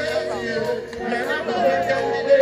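Voices talking over faint music that carries no heavy bass.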